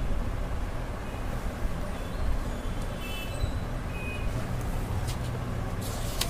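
Steady low rumble of road traffic going by, with a few faint higher tones partway through. Near the end there are some short rustles of paper as a page of the file is turned.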